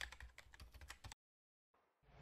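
Faint computer keyboard typing sound effect: a quick run of light key clicks that stops a little after one second in.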